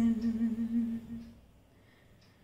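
An unaccompanied woman's voice holds a single steady low note with her lips closed, a hum that fades away about a second and a half in, leaving near silence.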